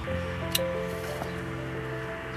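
Background music with held notes, over which hand pruning shears snip a twig once, a sharp click about half a second in.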